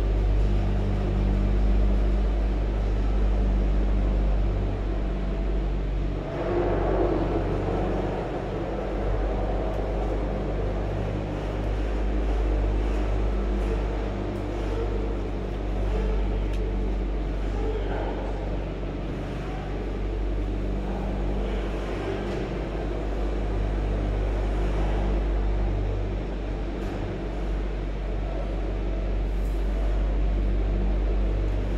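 Low, steady mechanical drone with a constant hum, from the cable car station's machinery, heard from inside the cabin as it moves slowly through the station.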